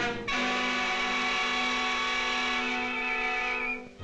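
Orchestral cartoon score: a single chord held for about three seconds, starting a moment in and fading out near the end.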